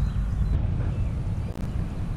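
A steady low rumble of wind on the microphone outdoors.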